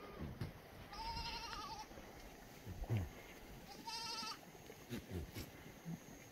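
Black goats bleating: two wavering, quavering bleats, one about a second in and another about four seconds in. Low thumps fall between them, the loudest just before the second bleat.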